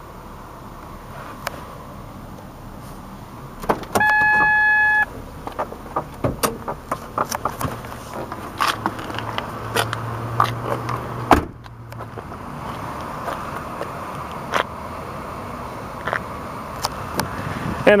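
A car's electronic warning chime sounds once, a steady tone lasting about a second. It is followed by scattered clicks and knocks of someone moving about and climbing out of the car, and a car door shutting about halfway through.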